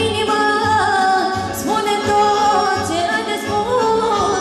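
Live Romanian Banat folk music: a woman singing a held, ornamented melody into a microphone over a band with accordion and saxophone, amplified through PA speakers, with a steady pulsing bass beat.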